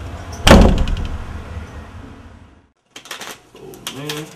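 A door slammed shut: one loud bang about half a second in that fades out over the next two seconds, then cuts off. A few light clicks and knocks follow near the end.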